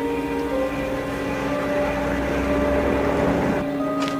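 Orchestral TV film score holding long sustained notes over a noisy low rumble that swells and then cuts off abruptly near the end.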